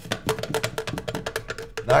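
Original T15 adjustable stock sliding loosely over the narrower remote-line buffer tube, a rapid run of light clicks and rattles, about a dozen a second, with a faint steady tone underneath. The stock was made to hold a tank and is too large for the buffer tube, so it does not fit.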